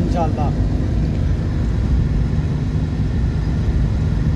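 Steady low rumble of road and engine noise heard inside a car travelling at highway speed.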